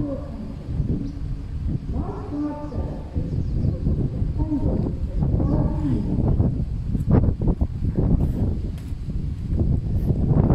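A person's voice saying a few drawn-out words over a steady low rumble, with a few short scratchy knocks about seven seconds in and near the end.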